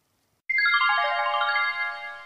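Short musical transition sting between podcast segments: a quick downward run of bright, ringing notes starting about half a second in, the notes held on together and fading away near the end.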